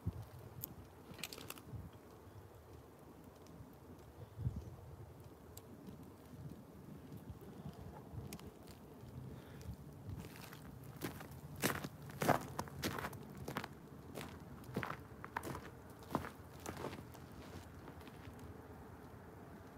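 Wood fire in a steel-drum burn barrel crackling quietly, with scattered sharp pops that come thicker in the second half.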